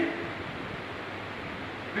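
Steady, even background hiss of room noise with no distinct events, after the tail of a man's spoken word at the very start.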